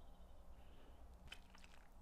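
Near silence: faint room tone.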